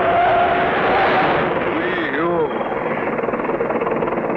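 Loud, steady vehicle engine noise from a cartoon soundtrack during a near-collision, with a wavering squeal in the first second and a short warbling cry about two seconds in.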